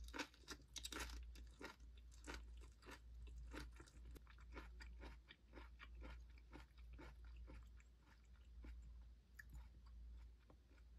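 Quiet close-up chewing of food, with crunching and many small sharp clicks, densest in the first few seconds, over a low steady hum.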